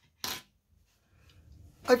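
A single short clink of a brass rod being handled against the tabletop about a quarter of a second in, then quiet until a man's voice starts at the very end.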